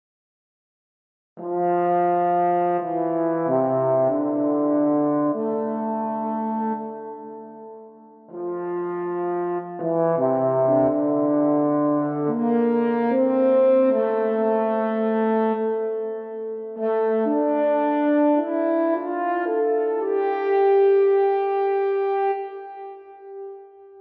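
French horn playing a slow pastoral melody of sustained notes. It comes in about a second and a half in, with short pauses between phrases.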